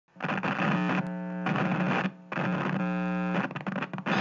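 Static-like electronic noise with a steady low hum, in two stretches with a short drop about two seconds in.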